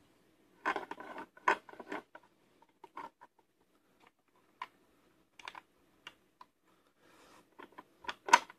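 Light, irregular metal clicks and scrapes from a Taylor Group 2 safe combination lock as its cam and wheel pack are turned by hand, with the lever nose riding on the wheels. The two loudest clicks come in the first two seconds.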